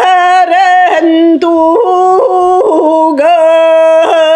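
A woman singing solo in the Sakha toyuk style. She holds long notes and breaks them with quick throat-flick ornaments, the kylyhakh typical of toyuk.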